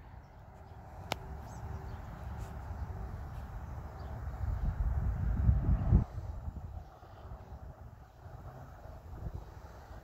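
Wind buffeting an outdoor microphone: a low, fluttering rumble that builds to its loudest about five to six seconds in and then drops away abruptly. A single faint click about a second in.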